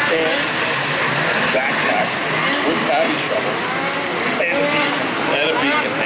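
Overlapping voices over a steady, noisy din of snowmobile engines running.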